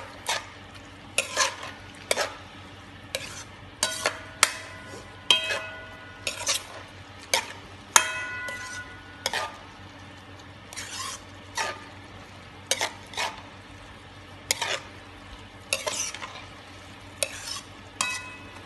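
Minced pork sizzling in oil in a wok while a utensil stirs it, scraping and knocking against the pan at irregular intervals, a few of the strikes ringing briefly.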